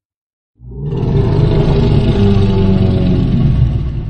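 Godzilla's roar from the 2014 film, as a sound effect: it starts suddenly about half a second in, a long, loud cry in several pitched layers over a deep rumble, holding steady and just beginning to fade near the end.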